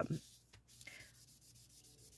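Faint rubbing strokes of a hand over printed paper soaked in mineral oil, pressed flat on a work surface.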